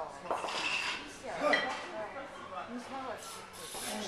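Heavy breathing of a kettlebell lifter working through a long-cycle rep, a noisy breath about every second as the bell is swung, cleaned and jerked overhead.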